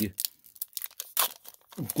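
Foil wrapper of a Pokémon trading-card booster pack being torn open by hand: a string of sharp crinkling, tearing crackles, the strongest about a second in.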